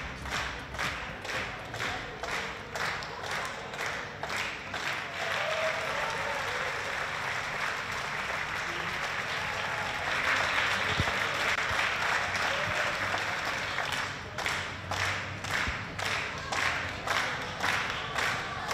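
A hall full of people applauding and chanting in celebration of an approved vote. The clapping is rhythmic and in unison, about two claps a second, at the start and again near the end, and turns into denser, continuous applause in the middle.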